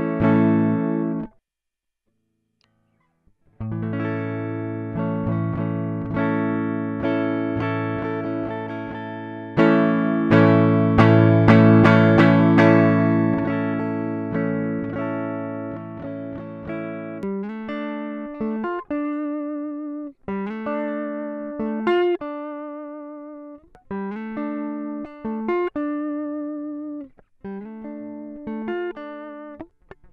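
Clean electric guitar: a Stratocaster-style guitar played on its neck pickup, first a DiMarzio FS-1 and then, after a two-second break, a VFS-1 pickup in full-coil mode. The first phrase stops about a second in. The playing then resumes with ringing chords and notes, and from about halfway through turns to single notes with vibrato and short pauses.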